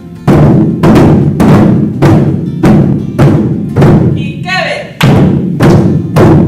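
Large drums struck with wooden sticks in a steady beat, a little under two strokes a second, each stroke ringing on in the room. There is a short break in the beat about four seconds in.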